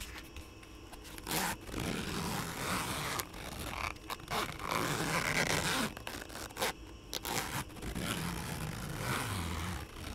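Zipper of a zip-around leather ear-cleaning kit case being drawn along close to the microphone, with scraping and rubbing of the case. It comes in long stretches broken by short pauses.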